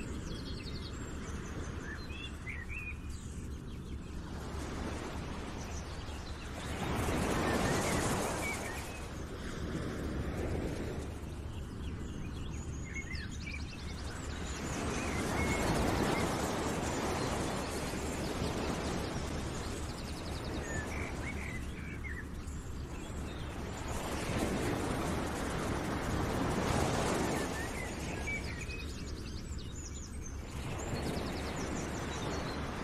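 Outdoor nature ambience: a rushing noise that swells and falls back about every eight seconds, with scattered bird chirps over it.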